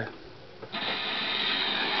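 Gramophone needle set down on a spinning shellac 78 rpm record, followed by the steady hiss of the record's surface noise in the lead-in groove, starting suddenly about two-thirds of a second in.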